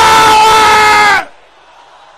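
A voice shouting one long held call into a microphone, very loud, cutting off a little over a second in. A faint wash of many voices from the congregation follows.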